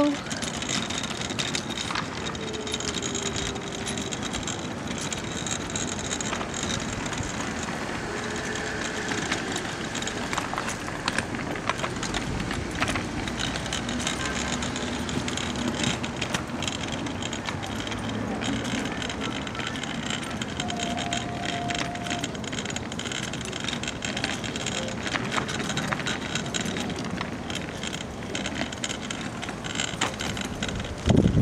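A loaded folding wagon's wheels rolling over pavement: a steady rumble with frequent small rattles and clicks.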